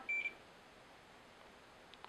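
A single short, high electronic beep from a digital multimeter as its probes go onto the transformer's output terminals, followed by near silence.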